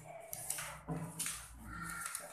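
Paper picture cards being gathered up and shuffled on a wooden table, rustling in a few short bursts.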